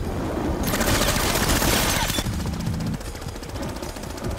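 Automatic gunfire in long, rapid bursts, a dense rattle of shots that starts about half a second in and stops about three seconds in.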